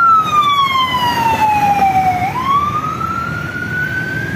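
Ambulance siren wailing: one slow tone falls for about two seconds, then turns sharply and climbs again, over the rumble of passing traffic.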